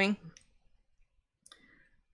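The last spoken word ends, then near silence with a short faint click about a second and a half in.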